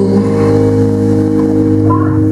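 Live band holding one long, steady chord with no singing: the closing chord of the song.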